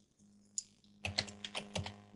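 Computer keyboard and mouse: a single click, then a quick run of keystrokes in the second half.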